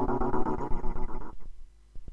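A sample played by Reason's NN-XT sampler and retriggered by the RPG-8 arpeggiator, stuttering in a steady rhythm of about ten repeats a second. About a second in it fades away as the arpeggiator's velocity is turned down, leaving only faint clicks at the same rate.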